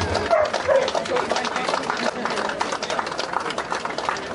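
Crowd clapping, with voices in the crowd, and a dog barking three short times in the first second or so.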